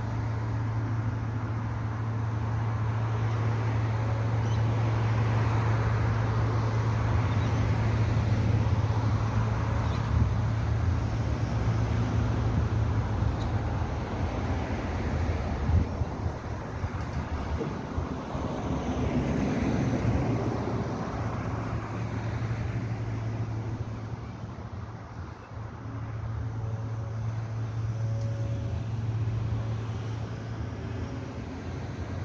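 Road traffic: cars passing on a street, their engine and tyre noise swelling and fading a few times, over a steady low hum.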